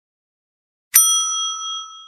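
A single bell ding sound effect, like a notification bell: silence, then about a second in one sharp strike that rings on with several clear tones and fades near the end.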